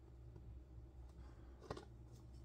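Near silence: room tone with a steady low hum, and a faint scratch and small click near the end, like a hand handling a cardboard box.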